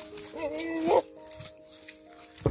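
A goat bleats once, a wavering call of under a second that stops abruptly, over background music with long held notes.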